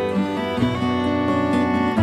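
Instrumental passage of a contemporary Irish folk song between sung verses, with bowed strings over guitar.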